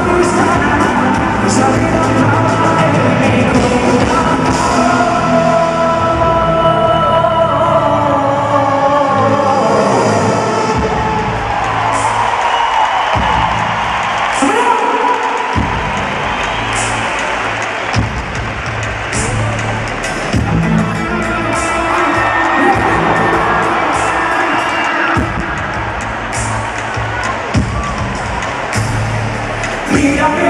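Live pop band with a male lead vocal, amplified in a large arena, with the crowd cheering. The bass and drums drop back for a few seconds about halfway through, then return.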